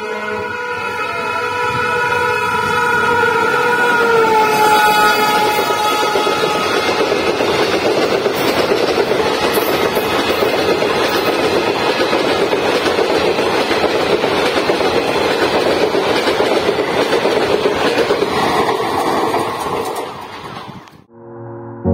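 An Alstom WAG 12B electric locomotive sounds a long horn blast as it approaches at speed. The horn's pitch drops about four seconds in as the engine passes. Then comes a loud, steady rush of wheel-on-rail noise as the express's coaches run through without stopping.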